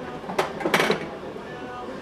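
Hand tools and fuel line being handled on a workbench: a sharp click about half a second in, then a short, sharper noise just before a second in, with quiet handling between.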